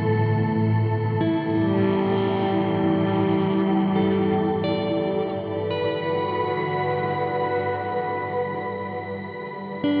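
Ambient instrumental music of long, sustained chords that change a few times, fading slightly near the end before a new chord comes in.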